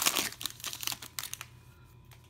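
Crinkly foil wrapper of a 2019 Legacy football card pack crackling as it is pulled open by hand, dying away after about a second and a half.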